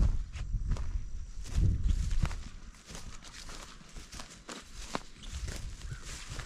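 Footsteps of a person walking through pasture grass: a run of uneven soft steps, heavier in the first two seconds and lighter after.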